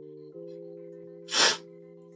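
Soft background music of steady held chords, with one short, sharp, sneeze-like puff of breath close to the microphone about a second and a half in.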